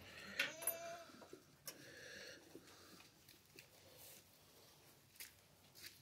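Quiet goat shed with goats close by in straw: a faint short call just under a second in, then scattered light clicks and rustles, with a couple of clicks near the end.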